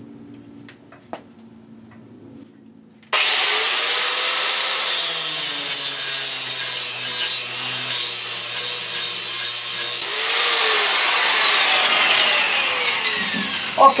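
A corded 4.5-inch electric angle grinder starts suddenly about three seconds in, and its abrasive disc grinds hard into a metal bar held in a vise, with the operator leaning into it to load the motor. Near the end the motor's pitch falls as it winds down.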